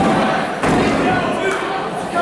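Thuds of wrestlers' bodies hitting the ring mat, two impacts about half a second apart, over crowd voices.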